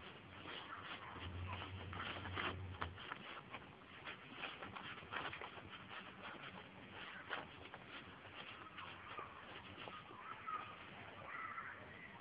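A horse nosing into the mouth of a feed bag, the bag rustling and crinkling in a run of small irregular crackles, busiest in the first few seconds.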